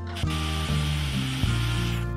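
A jeweller's gas torch hissing steadily while annealing a small strip of silver on a soldering block. The hiss starts just after the beginning and stops near the end, under background music with a low bass line.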